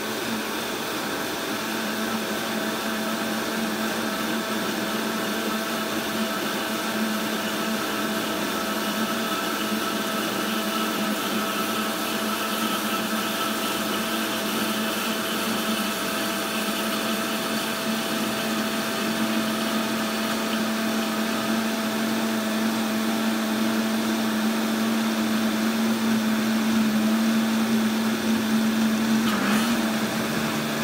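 Countertop blender running steadily on high while salt water is slowly added, emulsifying the oils into a creamy butter. Its hum grows slightly louder toward the end.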